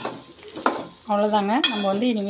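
A spatula stirring and scraping shallots, garlic and grated coconut around a frying pan, with the fry sizzling. From about a second in, a person's voice comes in over it and is the loudest sound.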